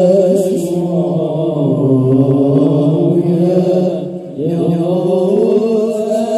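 Male voices chanting sholawat, Islamic devotional praise of the Prophet, into microphones: a slow, drawn-out melody with a brief dip about four seconds in before the chant picks up again.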